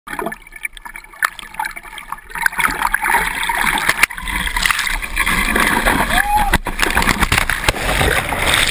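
Ocean whitewater rushing and splashing over a bodysurfer riding a wave with a handplane, heard through an action camera at the water surface, with sharp knocks of water hitting the camera. Quieter at first, it turns loud and churning about two and a half seconds in as the wave takes him.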